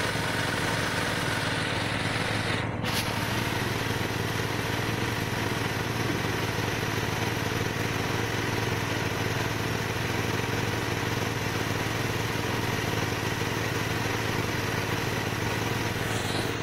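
Honda CBR250R's single-cylinder engine idling steadily in gear, driving the rear wheel and chain round on the stand.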